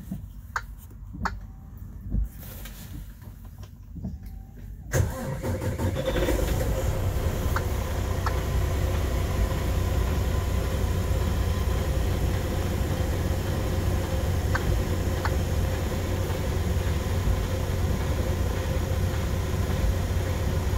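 Freightliner Cascadia's diesel engine starting about five seconds in, after a few faint clicks, then idling steadily.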